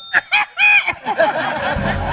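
A single ding of a tap bell right at the start, ringing briefly, followed by several people laughing in loud short bursts, then general laughter and chatter.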